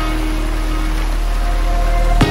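Background music with steady held low notes and a few sustained higher tones.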